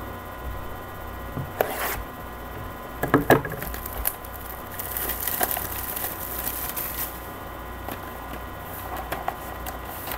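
Plastic wrap being torn and crinkled off a cardboard box of trading cards, with handling rustles: sharp crackles about two and three seconds in, then a longer crinkling stretch in the middle. A steady electrical hum sits underneath.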